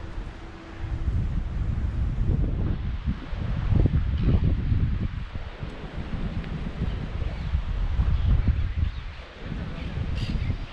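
Wind buffeting the camera microphone: a gusty low rumble that picks up about a second in and swells and eases.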